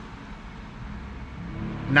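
Low vehicle rumble heard from inside a car's cabin, with a steady low hum rising in the last half-second.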